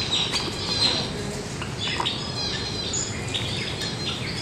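Many aviary birds chirping and squawking at once, with short calls overlapping throughout and a few sharp clicks.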